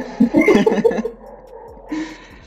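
Men laughing, in loud choppy bursts during the first second that then die down.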